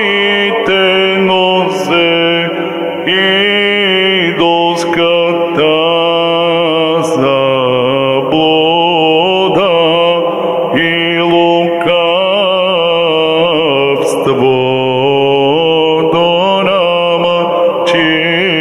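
A man chanting an Orthodox Matins hymn in Church Slavonic into a microphone. His melody is ornamented and gliding, sung over a steady held lower note that drops about eight seconds in and returns a few seconds later.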